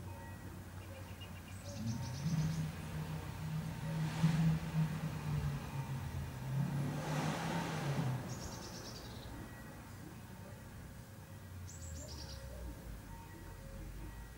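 A motor vehicle passing: a low engine hum swells and fades over about six seconds. Brief high bird chirps sound several times around it.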